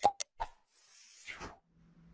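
Animated subscribe-reminder sound effects: a sharp mouse-click, a second quick click and a pop, then a whoosh that falls in pitch over about a second. A faint steady low hum comes in near the end.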